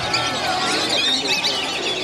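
A mixed flock of waterbirds calling at once, with many overlapping high squealing and whistling calls.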